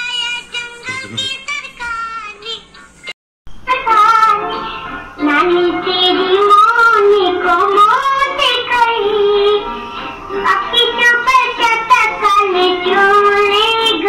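Singing, broken about three seconds in by a brief cut to silence. After the cut a woman sings a solo melody.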